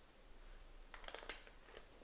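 Quiet room with a few faint light clicks about a second in, from a metal spoon touching the biscuits or wire cooling rack as melted chocolate is drizzled on.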